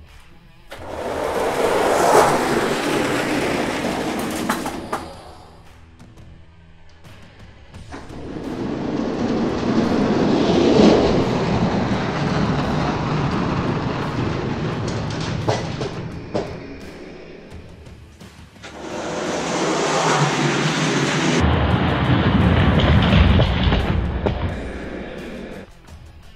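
Die-cast toy monster trucks rolling down a plastic race track, a rumble that comes in three long stretches, with background music.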